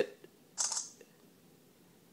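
Samsung Galaxy S3 camera firing its burst-shot shutter sound from the phone's speaker: one short, hissy burst about half a second in, lasting under half a second.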